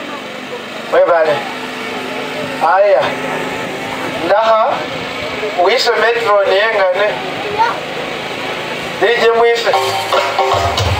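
A man's voice over a public-address system, in short phrases with a wavering pitch and pauses between them.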